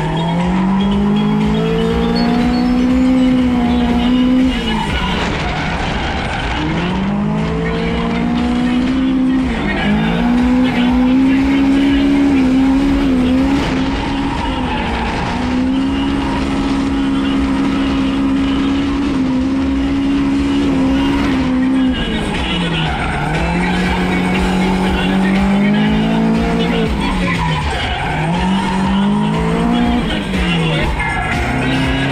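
Toyota AE86 Corolla's engine driven hard in drifts, its note climbing, holding high for several seconds and dropping away again about every four to eight seconds, with tyres sliding underneath.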